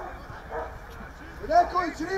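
A dog barking several short, quick barks near the end, with voices shouting in the background.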